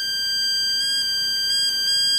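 Steady high-pitched whine from a homemade bi-toroid transformer's ferrite cores, driven by a transistor pulse oscillator, with several evenly spaced overtones. The upper overtones grow louder a little under a second in and dip briefly near the end.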